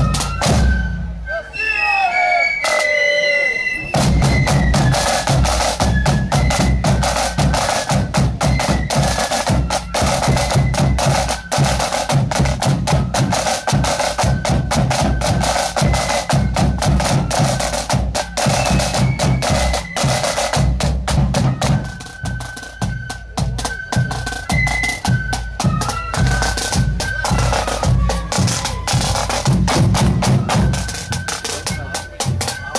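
Marching flute band playing: a massed line of snare drums and bass drums keeping a dense beat, with flutes carrying a high melody above. The drums stop briefly about a second in and come back in about four seconds in.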